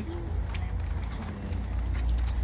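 Outdoor background with a steady low rumble and faint voices murmuring.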